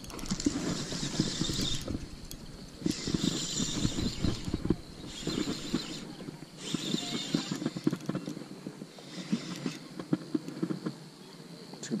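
Spinning reel being cranked to retrieve line, a rapid ticking whir that comes in spells of a second or two with short pauses between.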